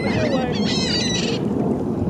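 Steady wind and water noise on the microphone, with a high, wavering bird call over it during the first second and a half.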